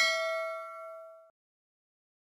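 Notification-bell ding sound effect: a bright bell tone that rings and fades, then cuts off short about a second and a quarter in.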